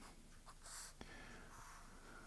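The tip of a BIC Marking Pocket permanent marker drawing a line on paper, very faint, with a short scratchy stroke before one second and a light click of the tip about a second in.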